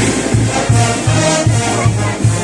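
Brass band playing festive dance music, with a steady bass beat about two and a half times a second under the melody.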